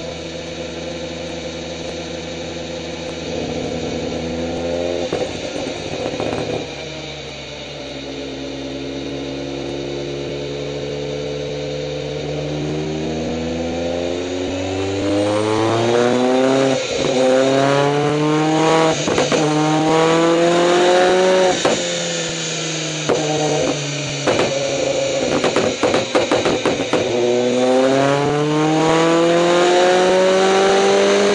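Turbocharged Mitsubishi Colt Evo engine running on a dyno while its anti-lag system is tuned. The revs hold fairly steady for the first half, then climb in long sweeps, drop back, and climb again. Sharp anti-lag bangs and pops crack through, thickest in the second half.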